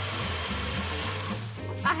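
Two personal blenders running at once, blending smoothies, with background music underneath; the blending dies away and stops about a second and a half in.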